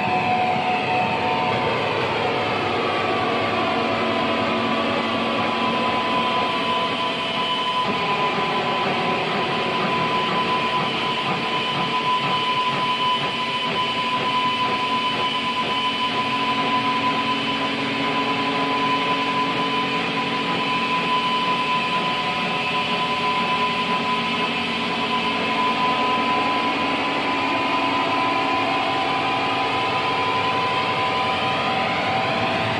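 Noise / drone music from a harsh-noise and powerviolence split record: a steady, dense wall of rumbling noise with held tones and a slowly sweeping, phasing wash over the top.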